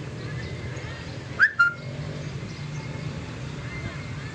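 A short two-note whistle about a second and a half in, the first note rising and the second held briefly, over a steady low outdoor rumble.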